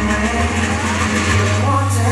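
K-pop dance track playing: a sustained synth bass that steps up in pitch about a second in, under a gliding voice.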